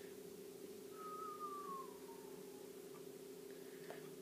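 Quiet room tone with a steady low hum. About a second in, a faint thin tone glides slowly downward for about a second and a half.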